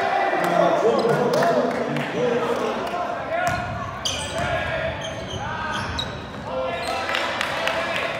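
Basketball game sound in a gym: players and spectators calling out, with a basketball bouncing on the hardwood floor.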